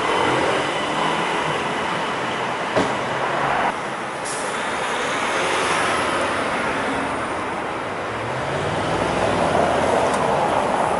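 City street traffic with a Bentley Continental GT driving past over cobblestones, its engine and tyres rising near the end. A single sharp knock about three seconds in.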